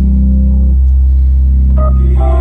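Electric console organ holding a sustained chord over a deep bass note. Partway through, some of the middle notes drop away, and a higher note sounds briefly near the end as the chord changes.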